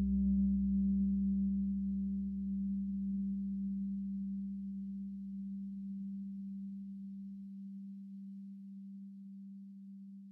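A single low, steady tone with faint overtones, slowly fading away. A deeper rumble beneath it stops about seven and a half seconds in.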